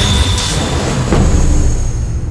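Loud theme music of a TV documentary's title sequence, with a sudden hit about a second in.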